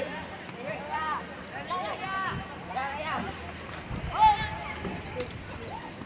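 Players and coaches shouting across a football pitch: a string of short calls about a second apart, the loudest about four seconds in.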